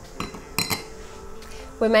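Stemmed glass coupes set down and handled on a counter: a few light glass clinks, one with a brief high ring.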